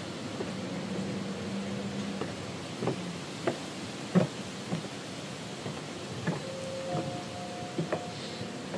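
Footsteps of 7-inch platform high heels on a paved deck: short sharp heel clicks every half second to a second over a steady outdoor hiss. A faint low hum runs under the first two seconds, and faint steady tones sound near the end.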